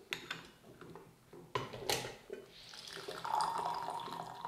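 A few light clinks of a porcelain gaiwan lid against its bowl. Then, from about two and a half seconds in, brewed tea pouring from the gaiwan into a glass sharing pitcher, a trickle that grows as the pitcher fills, after a quick infusion.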